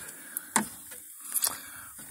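Handling noise: a few short clicks and knocks, about half a second in and again past the middle, over a low background hiss.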